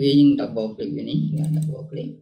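A man talking steadily, with a few sharp computer clicks in the second half.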